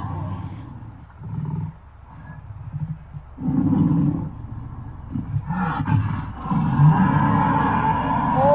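Recorded dinosaur roars and low growling, played for the dinosaur models and heard from inside a car; the roaring swells louder about three and a half seconds in.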